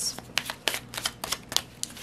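A tarot deck being shuffled by hand, the cards giving a quick, irregular run of soft clicks and snaps as they slide and tap together.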